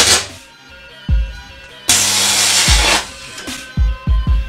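Electric arc from a short-circuited capacitor bank, in two loud hissing bursts: one dies away just after the start, the other runs from about two seconds to three seconds with a low hum beneath it. A few short low thumps fall in between and near the end.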